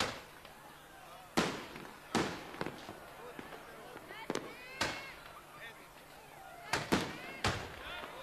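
Fireworks going off: about seven sharp bangs at uneven intervals, each with an echoing tail, and three in quick succession near the end.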